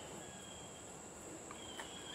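Faint woodland ambience: a steady high-pitched insect drone, with a couple of light ticks near the end.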